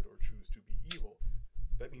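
A few sharp clicks and low bumps under faint, broken speech, with one sharper click about a second in; a man's voice resumes near the end.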